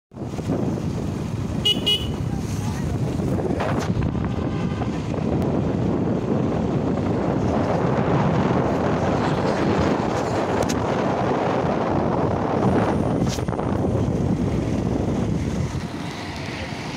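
Steady wind rush on the microphone and road noise from riding on an open two-wheeler, with a brief high-pitched horn toot about two seconds in.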